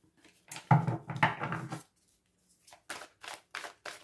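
A large deck of tarot cards shuffled by hand: a stretch of card rustling about half a second in, then a run of short crisp card snaps in the last second or so.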